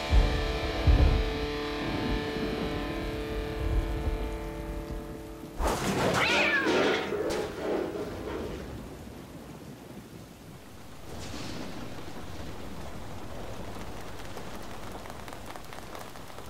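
A sustained music chord fades out over the first five seconds. About six seconds in, a cat yowls for a second or so. Steady rain falls through the second half.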